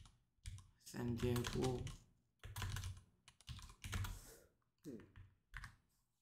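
Typing on a computer keyboard, a run of keystrokes, with short bursts of speech among them.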